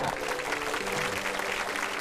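Studio audience applauding, with background music holding steady notes underneath.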